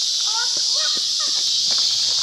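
A steady, high-pitched insect chorus of crickets or similar insects, with faint talk and a few light knocks under it.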